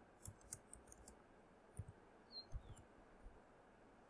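Faint, scattered clicks of computer keyboard keys being typed, a few at a time with gaps between them.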